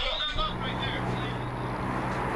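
A steady low mechanical hum with a rushing noise over it, setting in about a third of a second in after a brief snatch of voice.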